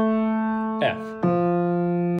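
Grand piano playing single left-hand notes: an A held and slowly fading, then a lower F struck about a second and a quarter in and held.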